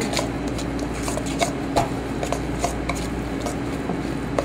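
Metal spoon stirring a thick ricotta cheese and herb filling in a stainless steel mixing bowl, with irregular clinks and scrapes of the spoon against the bowl.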